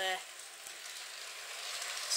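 Hornby Blue Rapier model train running on its track just after pulling away: the small motor and wheels give a quiet, steady running noise that grows slightly louder as the power is turned up.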